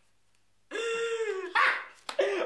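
A loud, drawn-out vocal shout that falls slightly in pitch, starting about 0.7 s in, then a short harsher burst, as a card player exclaims over a winning hand.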